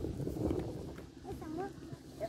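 Faint, indistinct voices calling out across a football pitch, with short calls about halfway through.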